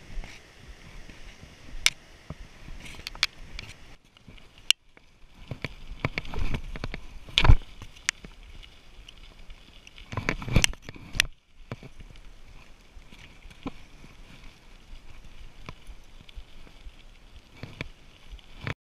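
Footsteps on trail steps for the first few seconds, then a bicycle rolling along a paved trail: steady tyre and road noise with irregular rattles, clicks and knocks. The loudest thump comes about seven and a half seconds in.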